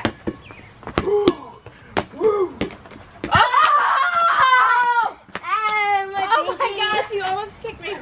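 A rubber playground ball smacking on a concrete driveway and off hands, a few sharp hits over the first three seconds, followed by loud, drawn-out laughing and shrieking from the players.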